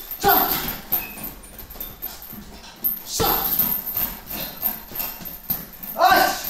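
Gloved punches striking a hanging uppercut bag, in two bursts: one about a quarter second in and one around three seconds in, with lighter hits between. Short, sharp vocal grunts or exhalations go with the combinations.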